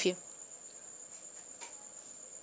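Faint, steady, high-pitched insect trilling, holding one unchanging note over a low hiss, with a faint click about one and a half seconds in.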